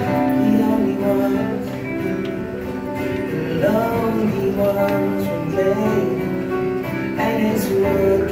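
Three acoustic guitars playing live with singing over them; a sung note bends in pitch about three and a half seconds in.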